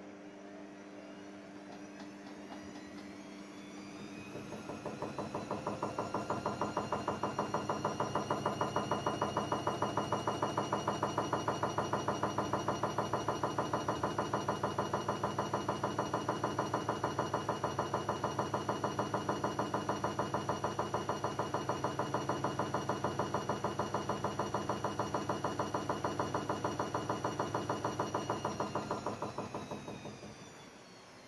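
Haier 7.5 kg front-loading washing machine spinning its drum in the final spin of a wool cycle: the motor's whine rises in pitch over the first few seconds, holds steady with a quick, even pulse, then winds down near the end.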